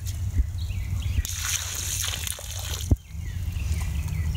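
Water tipped out of a small plastic cup, splashing and trickling into shallow pond water for about a second and a half, ending in a sharp knock.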